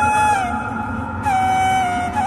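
Instrumental music: a solo flute playing a slow melody of held notes that slide from one pitch to the next, over a low accompaniment.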